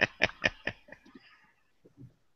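A person laughing, a quick run of 'ha' pulses that trails off about a second in.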